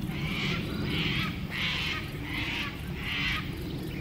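A bird calling five times in an even series, about one short call every 0.7 seconds, over a steady low rumble.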